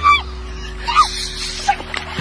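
A woman giving short, high-pitched yelps, three or four of them, while fighting a hooked fish thrashing at her feet.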